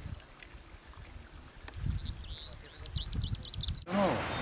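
A small bird singing a run of quick, high, arched notes that come faster and faster, starting about two seconds in, over an intermittent low rumble.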